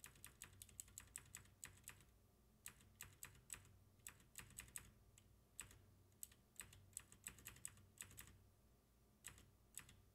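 Faint computer keyboard typing: quick, uneven runs of key clicks broken by short pauses.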